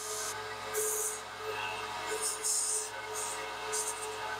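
Bandsaw running with a steady hum, its blade notching the edge of a laminate floor board in several short cutting bursts of hiss.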